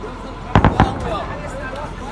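Three sharp bangs in quick succession about half a second in, over men talking.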